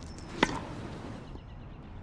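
A tennis ball struck with a racket: one sharp, short pock about half a second in.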